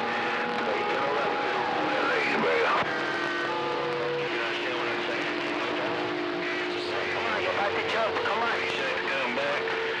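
CB radio receiving long-distance skip traffic: several distant stations' voices overlap, garbled and indistinct, over a steady hiss of static. Steady heterodyne whistles from carriers clashing on the channel run underneath, changing pitch a couple of times.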